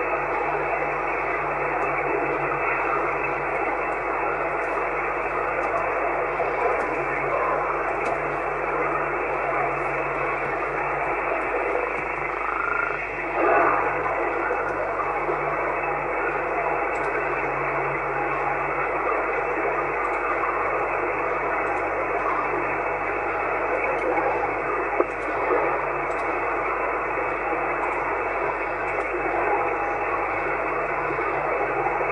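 Steady static hiss from a Yaesu FT-450 transceiver's speaker while it receives on the 11-metre CB band in upper sideband, with no station coming through. A short swell comes about thirteen seconds in, and a single click near the end.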